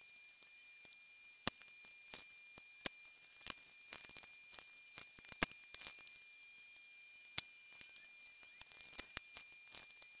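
Faint, irregular clicks and taps of stiff laminated cards being handled and trimmed on a Fiskars paper trimmer, over a steady faint high tone.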